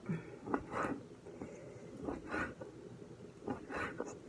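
A knife cutting raw chicken thigh on a wooden cutting board, quiet and soft. A few louder breaths come close to the microphone, about every second and a half.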